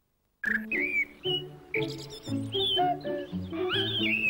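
After a brief silence, a light classical tune starts about half a second in, with chirping birdsong woven over the notes.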